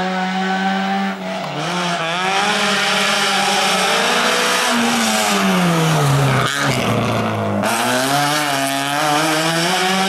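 First-generation Renault Clio slalom car's engine revving hard through the cones, its pitch dipping and climbing with each lift-off and gear change. The pitch falls steeply as the car passes close by just past the middle, then climbs again as it accelerates away.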